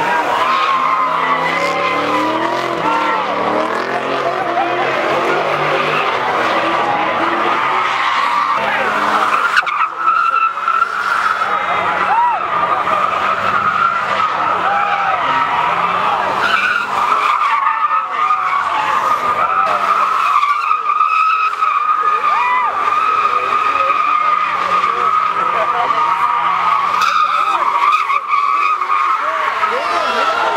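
A car doing donuts, its rear tyres spinning and squealing in one long steady squeal that holds unbroken from about a third of the way in, with the engine running under it.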